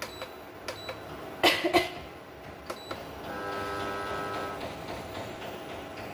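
Cooking pot and utensils being handled on a stove: a few sharp clicks and knocks in the first three seconds, then a steady hum with a faint whine for about a second and a half.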